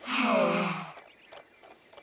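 A cartoon character sighing once, a long breathy sigh with a falling pitch lasting about a second, voiced through a pitch-shifting resample edit.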